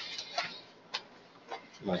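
Four light, sharp clicks about half a second apart during a pause in speech.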